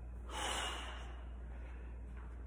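A man breathing out hard, winded from a heavy set of bench presses: one loud, noisy exhale about a third of a second in that fades over half a second, over a steady low hum.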